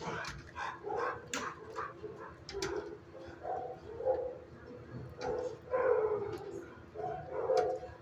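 Dogs barking repeatedly in shelter kennels, a bark every second or so.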